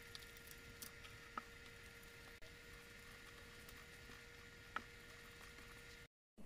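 Faint, soft squishing of wet yeast dough being mixed and kneaded by hand in a stainless steel bowl, with a few light clicks, the clearest about five seconds in. A faint steady hum runs underneath.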